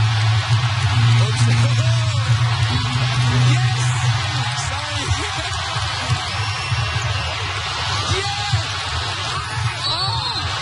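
Music with a strong, steady low bass note that fades out about halfway through, over a constant noisy haze.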